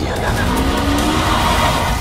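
Film-trailer sound effects of a vehicle chase, played back through computer speakers: an engine note gliding up and tyres skidding.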